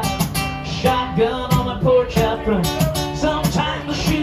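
Acoustic guitar strummed steadily in a country song, played live.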